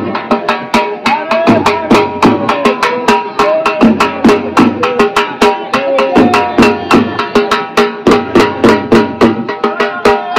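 Dhol drum beaten in a steady, quick rhythm for jhumar dancing, about three or four strokes a second, with a gliding melody over it.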